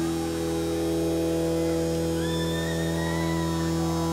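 A steady drone of several sustained notes held unchanged from the band's stage instruments, with a faint high whistle gliding upward about two seconds in.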